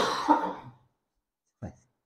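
A man coughs once: a sudden, harsh burst lasting under a second. A brief, smaller noise follows about a second and a half in.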